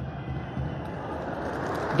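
Steady stadium background noise from a football match broadcast: an even rushing hiss with no distinct events, swelling slightly toward the end.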